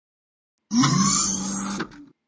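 A short electronic sound effect for a logo appearing, about a second long. It is a steady low tone that slides up slightly at its start, with a hiss above it, and it starts suddenly and cuts off near the end.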